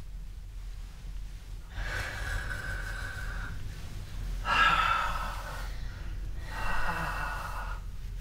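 A person breathing out audibly three times in a slow rhythm, each breath lasting one to two seconds, the middle one loudest: breathing rhythm made audible so that it can be picked up and echoed back.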